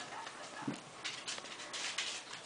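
Faint, scattered taps and clicks of a Shih Tzu puppy's paws and claws on a hard floor as it moves about.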